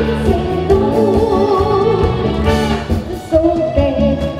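A young boy singing a Korean trot song into a microphone, backed by a live band. He holds one long note with vibrato about a second in, then starts a new phrase near the end.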